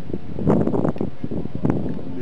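Wind buffeting the camcorder microphone: a rumbling, uneven rush with a couple of short clicks about half a second and a second and a half in.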